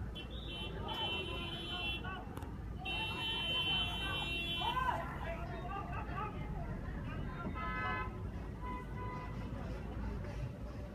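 A high-pitched electronic alarm tone sounding on and off, with a shorter lower tone near the end, over indistinct voices and a steady low rumble.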